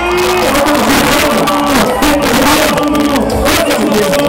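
Live axé pop band playing, with drums striking in a steady rhythm under a voice or lead melody that glides in pitch.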